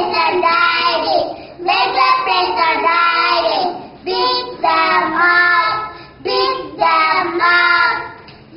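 Two young boys singing a song together in short phrases with brief breaks between them.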